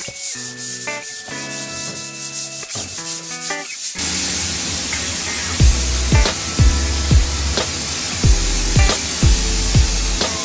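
Sandpaper rubbing over the wooden dummy's sealed trunk in quick, even strokes, under background music with held notes. About four seconds in it cuts suddenly to a loud, steady hiss, and music with a heavy bass beat comes in a moment later.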